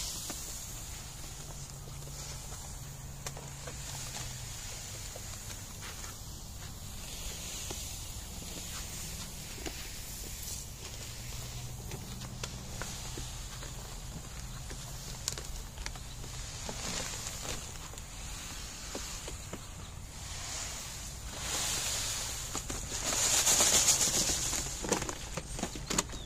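Calcined clay granules pouring from a paper bag onto a flower bed, a steady hissing patter that grows loudest for a couple of seconds near the end.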